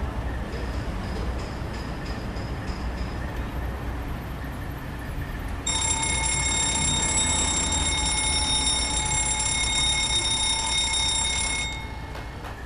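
A mechanical alarm clock's bell ringing steadily for about six seconds. It starts halfway through and cuts off suddenly near the end as it is silenced by hand. Before it there is only a low steady rumble.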